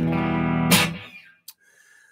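Electric guitar strummed: a chord rings steadily, a second sharp strum comes about three-quarters of a second in, and the sound dies away a little after a second.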